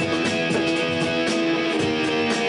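Live band music led by an amplified electric guitar, its strummed chords ringing on as long held notes.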